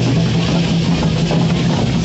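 Loud, steady procession drumming mixed with the rattling of the masked dancers' cocoon leg rattles.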